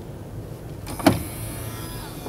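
2017 Chevrolet Corvette Grand Sport's motorized dashboard touchscreen sliding down on its electric motor to open the hidden storage space behind it. It starts a little before halfway with a sharp click, then a steady motor whir runs for about a second.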